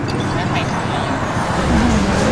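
Steady noise of road traffic passing, with a deeper rumble coming in about one and a half seconds in.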